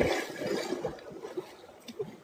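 Water splashing and churning as a man plunges into a cold river, the noise fading over the two seconds.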